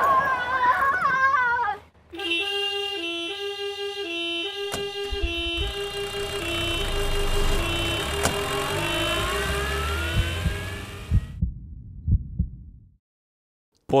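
Police car's two-tone siren, stepping evenly back and forth between two pitches, over a car engine that rises in pitch as the car pulls away. The siren cuts off suddenly about eleven seconds in, leaving a few low knocks. Excited shouting comes first, in the opening two seconds.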